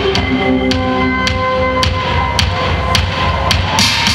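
Instrumental passage of live Italo disco: held synthesizer chords over a steady drum beat, a hit about every half second, with no vocals.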